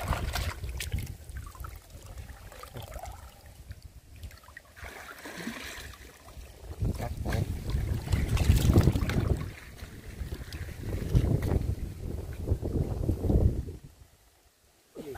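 River water splashing and sloshing as a hand net is lifted, drained and worked through the water by someone wading chest-deep, with heavy low wind rumble on the microphone in two stretches in the second half. The sound drops away abruptly at the end.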